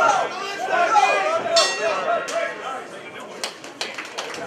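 Spectators shouting at a kickboxing bout, then a single ring bell strike about a second and a half in, marking the end of the round. Scattered claps start near the end.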